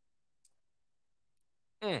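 Near silence with a faint, tiny click about half a second in, then a man's short 'mm' with falling pitch near the end.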